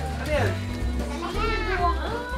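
Voices of a group chattering and calling out over background music with a steady low bass line.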